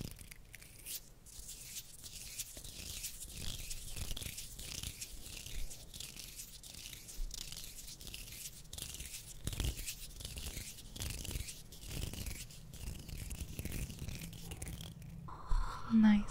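Close-up ASMR ear trigger: soft, continuous scratchy rubbing against the microphone, a rapid run of small strokes that stops just before the end.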